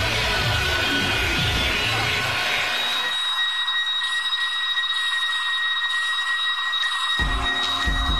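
Dark industrial techno playing in a DJ mix. About three seconds in, the bass and kick drop out, leaving steady high-pitched tones over a hiss, and the low end comes back with the beat near the end.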